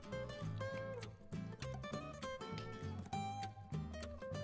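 Background instrumental music: a plucked acoustic-guitar melody over a bass line, note after note.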